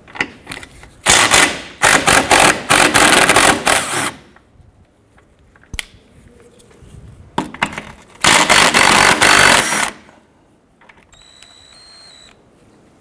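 Bauer 20-volt cordless impact wrench with a 15 mm deep socket on an extension, hammering engine mount nuts loose and off. It runs in two bursts, one of about three seconds and one of about two and a half seconds, with a pause between.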